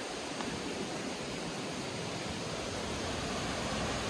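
A river running steadily below: an even, rushing hiss of flowing water.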